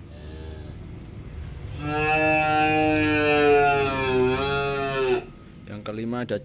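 A calf mooing: a short, quieter call at the start, then one long, loud bawl of about three seconds that wavers a little in pitch before breaking off.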